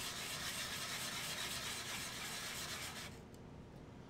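Hand sanding: a cast resin binocular housing half rubbed back and forth on a sheet of sandpaper laid flat on the bench, a steady scraping that stops about three seconds in. The part is being flattened, its raised high spots taking the most abrasion.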